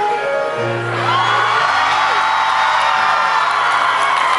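Live band opening a song with sustained keyboard chords, a deep bass note coming in about half a second in, and audience whoops and cheers over the music.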